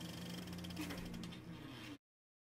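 Faint snowmobile engine running steadily with an even hum as the sled works through deep powder.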